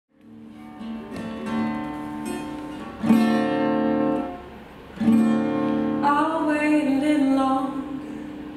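Acoustic guitar playing a slow intro, with chords left ringing: lighter picked notes first, then full chords struck about three seconds in and again at five. A woman's voice comes in with wordless singing about six seconds in, over the guitar.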